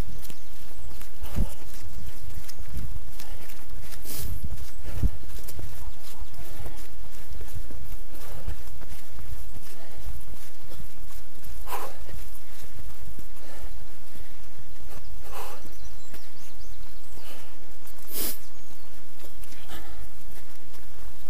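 Trail runners' footsteps on a steep dirt path through brush, irregular and scattered, under a constant low rumble of wind and movement on a camera carried by a running person.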